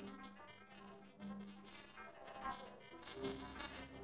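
Samsung logo jingle run through a 4ormulator effect: faint, heavily distorted music made of dense stacks of tones that shift in pitch and grow louder about three seconds in.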